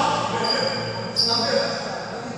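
Court shoes squeaking on a badminton hall floor: two short, high squeaks, about half a second in and just after a second in, with voices around them in the echoing hall.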